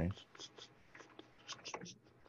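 Computer keyboard being typed on: several faint, irregularly spaced key clicks while a line of code is edited.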